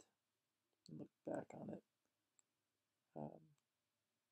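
A man's voice in three brief murmured sounds, with a faint click or two between them; otherwise near silence.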